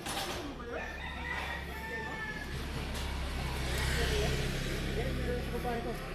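A rooster crowing near the start, followed by a motorcycle engine running close by, loudest about four seconds in.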